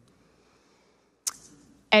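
A pause in speech: near silence, broken about a second in by a single short sharp click, then a woman's voice starting at the very end.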